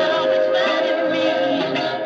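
1960s soul record with a female lead vocal over the band, a 7-inch single played on a 1950s Dansette Major record player and heard through its built-in speaker.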